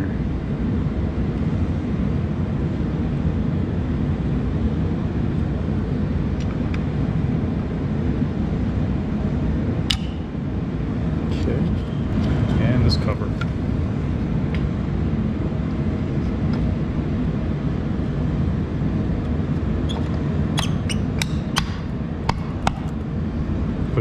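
Light metal clicks and taps from a pliers-fitted cooling fan and its sheet-metal shroud being worked onto an electric motor, a few about halfway through and a cluster near the end, over a steady low background rumble.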